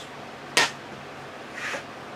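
Quiet workshop room tone with the router switched off: one brief sharp tick about half a second in, and a soft rustle near the end as a wooden rail is handled and set down on the router table.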